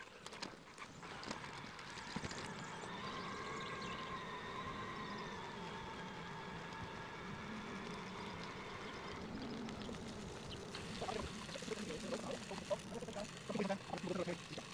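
Sped-up, high-pitched audio from an electric-bike ride. A steady whine with several pitches holds for several seconds, then gives way near the end to choppy, chattering sound.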